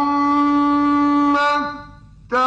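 A man's voice in melodic Quran recitation, holding one long vowel on a steady pitch, which fades away about a second and a half in.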